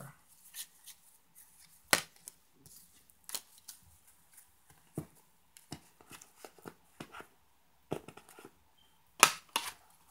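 Tarot cards being shuffled and handled on a table: scattered soft clicks and flicks of card stock, with a sharper slap about two seconds in and two more near the end as cards are laid down.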